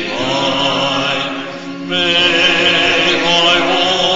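Church congregation singing a hymn in long, held notes, with a short breath between phrases about a second and a half in.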